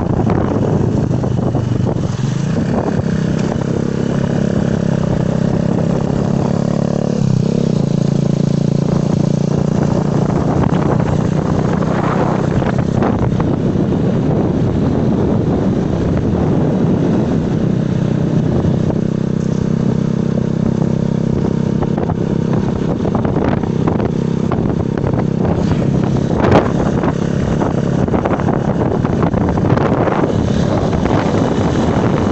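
Small motorcycle engine running while riding, its note shifting with the throttle and stepping down about seven seconds in, with wind noise on the microphone.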